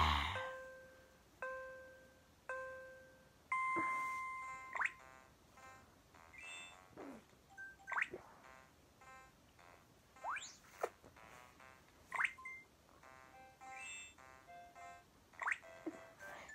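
Electronic toy game sounds: three short evenly spaced beeps, a longer beep, then a run of quick rising swoops and short bleepy notes like a simple game tune.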